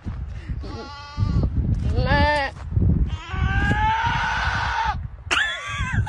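Goat bleating: four loud, quavering calls in a row, the third one long and drawn out.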